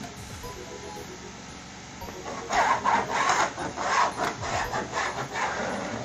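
Pen scratching on cardboard paper as it is traced around the rim of an upside-down plastic bowl. After a quiet start it becomes a loud, rapid run of scratchy strokes, about four a second, from about two seconds in.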